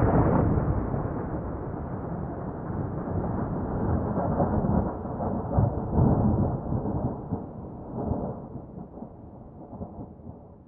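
Thunder rumbling in long rolling swells, loudest around five to six seconds in, then dying away near the end.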